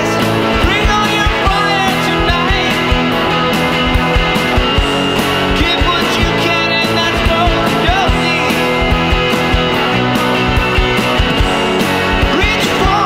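Indie rock band playing: electric guitars, bass and drums with a steady drum beat.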